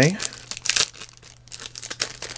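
Card packaging being handled and unwrapped: irregular crinkles and rustles, busiest about half a second in and again near the end. The tail of a man's word is heard at the very start.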